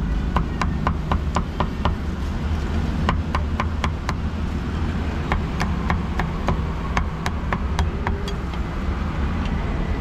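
Meat cleaver chopping pork, in three quick runs of sharp strokes, about four a second, with short pauses between runs, over a steady low rumble.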